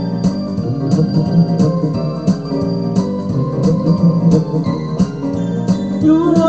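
Instrumental music: an electronic keyboard playing held organ-like chords over a steady percussive beat, with no vocals.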